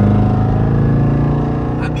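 Jeep Grand Cherokee Trackhawk's supercharged V8 pulling hard at a steady pitch, heard from inside the cabin. It is loudest at the start and eases slightly toward the end.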